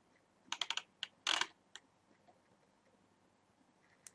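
Computer keyboard keystrokes: a quick burst of four clicks about half a second in, then a few more single keystrokes over the next second, before the keyboard goes quiet.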